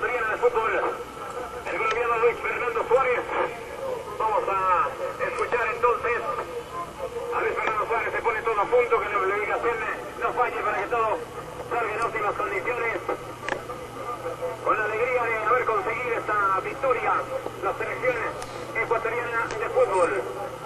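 Speech over a narrow, telephone-quality remote broadcast line, thin and muffled, running on with short pauses.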